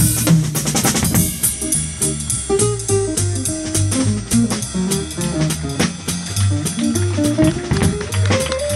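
Live smooth-jazz band playing: a drum kit keeps a steady beat under a bass line, with an acoustic guitar carrying a single-note melody.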